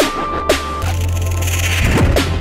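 Electronic dance track playing: a heavy, effects-laden bass with short drum hits that drop in pitch about twice a second. A high steady tone cuts off just under a second in, and a rushing noise sweep builds after it.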